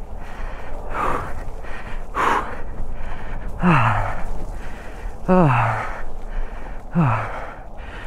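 A man breathing hard, out of breath from exertion: two sharp breaths, then three drawn-out sighing exhales that fall in pitch, about one and a half seconds apart.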